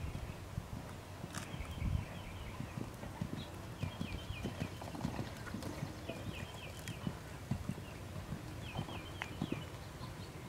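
A horse's hooves beat on sand arena footing at a trot, a muffled rhythmic thudding. A short high trilling call repeats about every two seconds.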